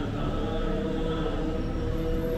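Buddhist chanting: several voices holding long, droning notes, running steadily with a low rumble beneath.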